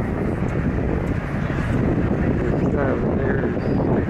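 Wind buffeting the microphone outdoors: a steady low rumble, with faint voices of people nearby.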